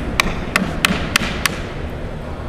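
Hammer blows: five quick, sharp strikes about a third of a second apart.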